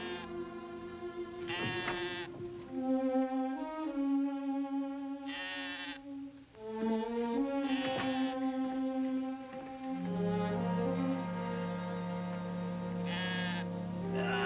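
A young lamb bleating in short, wavering cries, about four times, over background music of long held notes.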